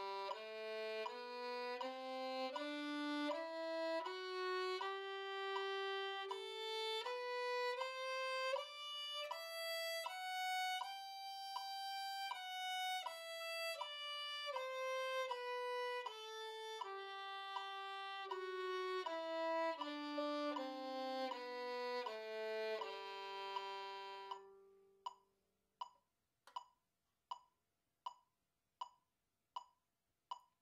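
A violin plays the two-octave G major scale in separate bows, one even note after another, climbing from low G to the top G and back down, and ending on a long held tonic. After that, steady metronome clicks come about every three-quarters of a second, 80 to the minute.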